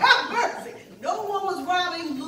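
A woman's voice exclaiming loudly, then holding one long, slowly falling drawn-out note in the second half.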